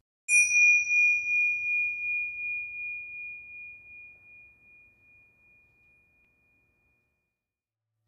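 A single bright bell-like ding struck about a quarter second in, its one clear tone ringing on and slowly fading away over about seven seconds, pulsing slightly as it dies.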